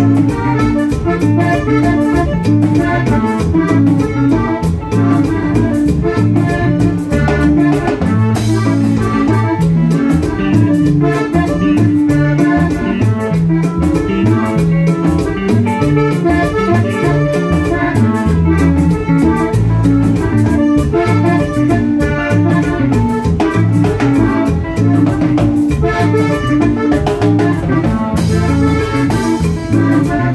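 Live Panamanian típico conjunto playing through a PA: a button accordion carries the melody over electric bass and a steady drum beat.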